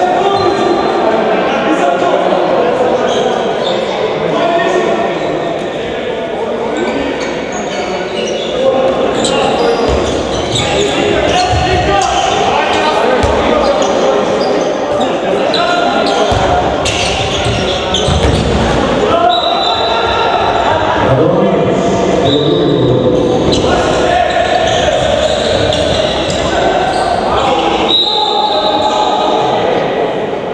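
A handball bouncing on a wooden sports-hall floor, echoing in the large hall, with voices talking and calling throughout.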